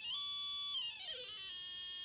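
Franzis DIY synthesizer kit's oscillator playing through its small speaker: an electronic tone holds steady, then glides down in pitch and fades as the frequency potentiometer is turned. A fainter steady tone comes in near the end.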